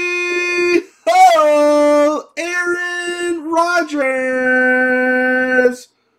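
A man's voice singing a short tune in four or five long held notes, the last one the lowest and longest, cutting off sharply near the end.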